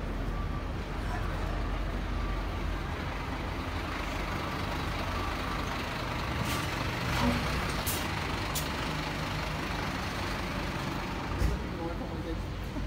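Fire engine's diesel engine running as the truck drives slowly past, with a few short air-brake hisses around the middle.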